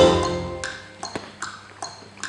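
The last sustained notes of a song fade out. They are followed by a string of light, ringing pings that alternate between a higher and a lower pitch at about two and a half a second, like a tick-tock cue in the backing music. A single sharp click comes just after a second in.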